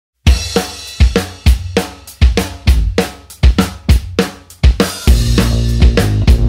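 Rock drum kit playing a steady beat: kick drum, snare and hi-hat/cymbals, opening the song alone. About five seconds in, the rest of the band comes in with sustained bass and guitar notes.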